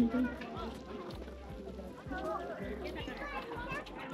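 Voices of people talking in the background, not close to the microphone.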